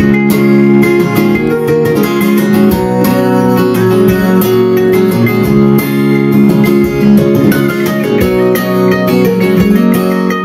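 Instrumental break in a live acoustic song: an acoustic guitar strumming chords while a mandolin picks a quick melody over it.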